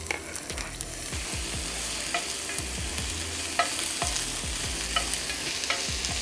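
Diced onion and bell pepper sizzling in hot olive oil in an enameled casserole pan, a steady frying hiss, while a spoon stirs them with a few short scrapes and clicks against the pan.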